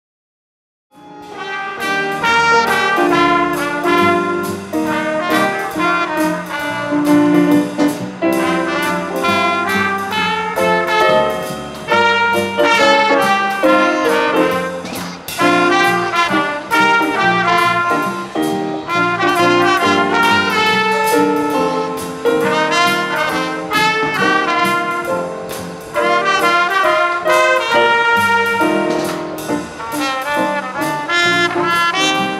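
Brass band playing jazz: trumpets and saxophone over a drum kit and keyboard, starting suddenly about a second in.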